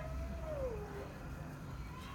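One long, thin cat meow that holds its pitch, then slides down and fades out about a second in.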